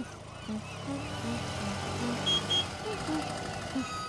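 Small three-wheeled tuk-tuk engine running and growing louder as it approaches. Two short high beeps come about two and a half seconds in.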